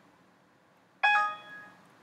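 Windows XP alert chime sounding once about a second in, a bright ringing tone that fades within about a second, marking a warning dialog box popping up on screen.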